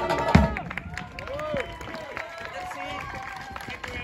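A street brass band of saxophones, trumpet, sousaphone, snare and bass drum ends its tune on a held final chord and a last drum hit about half a second in. Voices and chatter follow.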